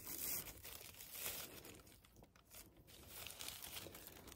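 Faint rustling and crinkling of a sheer fabric gift bag being untied and opened by hand. It is a little louder near the start and again about a second in, with a quieter stretch in the middle.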